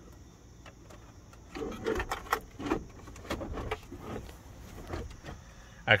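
Handling noise from a phone being moved and set down among the plastic dash parts: rustles, light knocks and clicks. It is quiet for the first second and a half, then comes a cluster of knocks and rustles, with lighter ones after.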